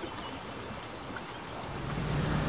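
Faint, steady outdoor background noise, with wind on the microphone rising near the end.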